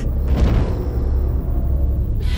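Deep, steady low rumble of a boom-like TV transition sound effect, starting abruptly and held without words.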